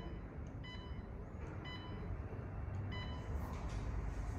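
Voltronic Power solar inverter's touch keypad giving several short electronic beeps as its buttons are pressed, one beep per press, while a setting value is stepped up to 5.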